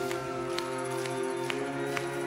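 Live band playing held chords, with a few light percussion strokes spread through them and no singing.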